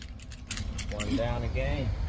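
Car keys jangling in a hand, a quick run of light metallic clinks, followed by a person's voice about a second in.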